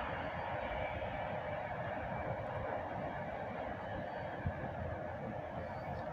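Distant freight train rolling along the line: a steady, even rumble of wheels on rails with no horn.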